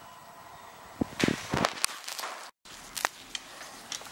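Footsteps and handling knocks: a few irregular thuds and sharp clicks from about a second in, broken by a brief moment of dead silence around the middle.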